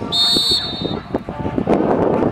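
Referee-style whistle blown once, a short trilled blast lasting under a second, signalling the end of the bite phase as the dog releases the decoy. Knocks and scuffs of the struggle run alongside, and a dense rush of noise follows near the end.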